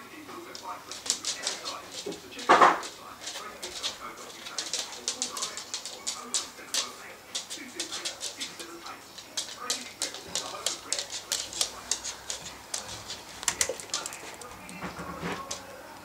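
Dogs' claws clicking rapidly and irregularly on a laminate wood floor as they scamper about, with one sharp bark about two and a half seconds in.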